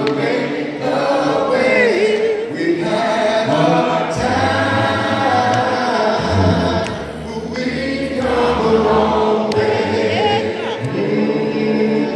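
A group of voices singing a gospel hymn a cappella in several parts, with a low bass line under the melody, in phrases a few seconds long.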